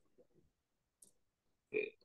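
A single faint computer click about a second in, as an equation is entered into a graphing calculator; otherwise very quiet, with a short murmur of a man's voice near the end.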